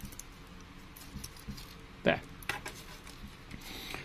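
Faint scattered clicks and light rattling of hard plastic kit parts as a plastic ammo chain and backpack are unplugged from the back of a model-kit action figure.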